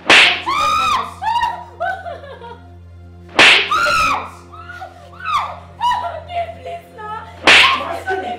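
Three sharp slap-like blows, about four seconds apart, each followed by a woman crying out in pain.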